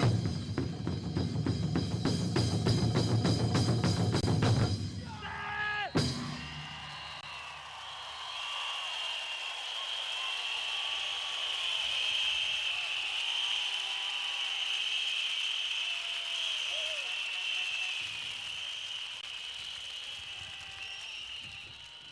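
Ensemble of large taiko-style barrel drums beaten in a fast, dense rhythm that ends with a single final stroke about six seconds in. A large crowd then cheers and applauds, with a steady high-pitched whistling over it.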